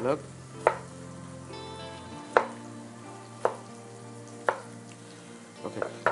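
Kitchen knife chopping a tomato on a wooden chopping board: about five separate sharp knocks of the blade on the board, roughly a second apart.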